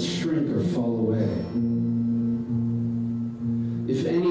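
A man singing to his acoustic guitar: a few sung words, then one long held note through most of the rest.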